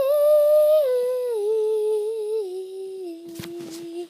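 A young girl humming one long wordless note that steps down in pitch several times, from high to low, and fades a little toward the end. A few sharp clicks come near the end.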